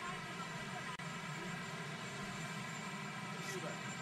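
A steady motor drone holding one pitch, with a brief dropout about a second in.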